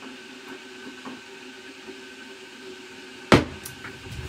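A drinking glass set down on a wooden tray, one sharp knock about three seconds in with a smaller click just after, over quiet room hum.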